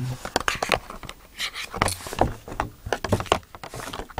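Handling noise: irregular clicks and knocks as iPod Touch cases and the iPod are picked up, turned over and set down close to the microphone.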